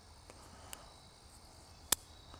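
Faint steady chirring of crickets, with one sharp click near the end.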